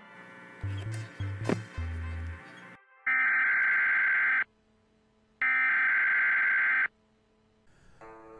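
Two long, steady electronic alert beeps of an emergency-broadcast attention signal, each about a second and a half, a second apart. They are preceded by a few short low notes.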